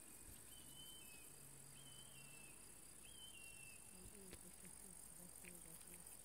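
Faint, steady, high chirring of meadow insects, with a few short whistled notes about once a second.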